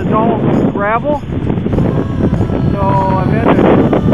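Strong storm wind buffeting the camera microphone in a steady rumble, with a voice breaking through in short stretches in the first second and a few held notes about three seconds in.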